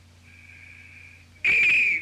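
A high whistling tone, faint and steady for about a second, then much louder for about half a second near the end before cutting off.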